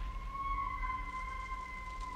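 One long wailing animal call, a single held note that swells slightly and slowly sinks away. In the film it is passed off as "just a loon", though the other character has never heard an animal sound like it.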